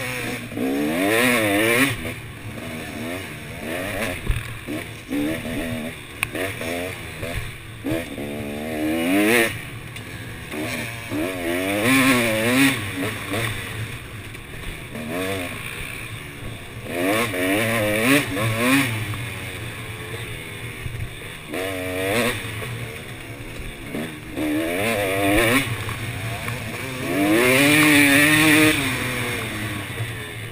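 KTM off-road dirt bike engine revving up and down over and over as the rider works the throttle through gear changes, with the longest, loudest run of revs near the end.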